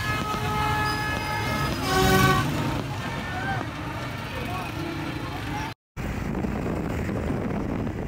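Horns tooting in long held notes over busy street noise, with a brief loud burst about two seconds in. After a sudden short break, steady engine and road noise from a motorcycle ride.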